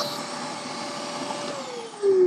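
A 2000-watt mains canister vacuum cleaner running on a portable battery power station, its motor giving a steady whine over the rush of air. About one and a half seconds in, the whine starts to fall in pitch as the motor winds down.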